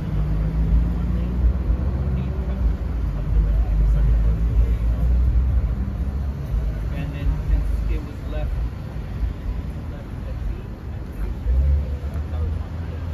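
A vehicle engine idling close by: a steady low rumble that eases about two-thirds of the way through, with indistinct voices of people talking over it.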